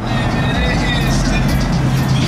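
Pickup truck driving past in street traffic: a steady low engine drone under road noise.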